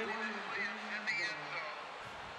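A man's voice speaking over the steady background noise of a football broadcast.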